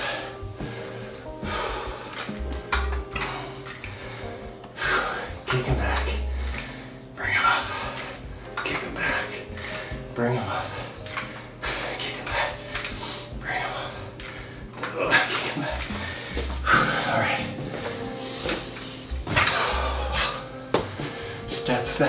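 Background music with a voice talking over it, from a workout video playing on a TV in a small room.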